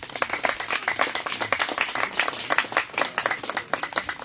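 A group of people clapping their hands in applause, starting suddenly and keeping up a dense, irregular patter of claps.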